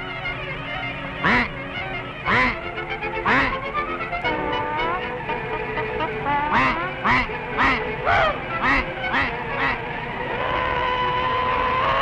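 Cartoon duck quacks, a string of short squawky calls, over a steady early-1930s orchestral score. The calls come a second or so apart at first, then quicker, about two a second, before the music holds a long note near the end.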